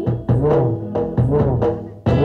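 Dance music driven by drums: a run of sharp drum strokes over deep notes that bend up and down in pitch, the sound falling away near the end.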